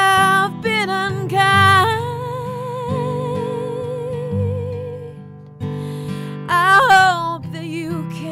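A woman singing long, wordless held notes with a wide vibrato over acoustic guitar chords. The voice thins out and dips briefly about five seconds in, then swells again near the end.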